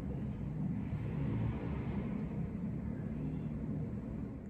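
Steady low background rumble, with nothing in the picture or the words to say what makes it.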